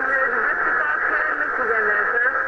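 CB radio receiver on channel 20 AM playing a weak skip transmission: a distant operator's voice buried in steady, muffled static. The voice is too faint to follow clearly, the sign of a long-distance skip signal barely getting through.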